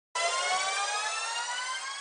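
A sustained electronic synth tone, rich in overtones, rising slowly in pitch while it gradually fades: a logo-intro riser.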